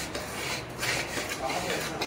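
A hand rubbing and scraping crumbly sweet dough across the bottom of a stainless steel bowl, a gritty rasping in a few strokes.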